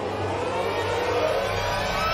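A housefly buzzing sound effect: a steady buzz with a slightly wavering pitch.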